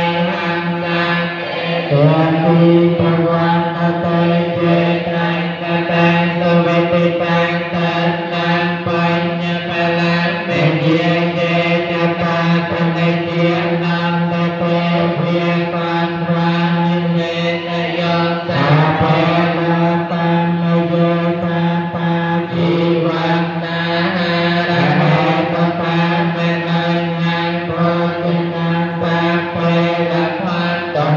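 Khmer Buddhist chanting: voices recite in long held notes over a steady drone, with a new phrase gliding in every several seconds.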